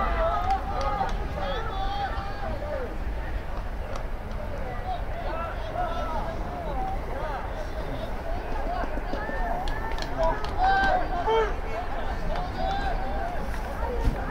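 Voices of players and people around a football field calling and talking at a distance, several at once in short scattered bursts, over a steady low rumble.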